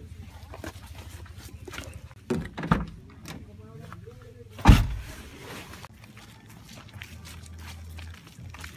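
Bags and dive gear being handled on a vehicle floor and seat: rustling and short knocks, a few quick knocks a little over two seconds in, and one loud thump a little before five seconds in, over a low steady hum.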